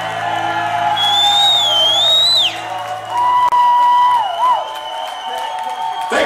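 A heavy metal band on stage letting a song ring out: a held chord dies away while an electric guitar plays high, wavering notes with bends, over a cheering crowd.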